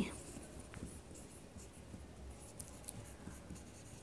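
Marker pen writing on a whiteboard: faint, short scratching strokes as a word is written out.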